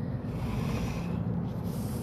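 A steady low mechanical rumble with a faint hum and light hiss, even throughout.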